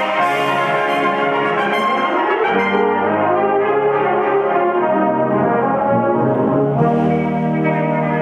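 Brass band playing held chords, the sound thinning to softer mid-range chords after a couple of seconds before a fuller, lower chord enters near the end.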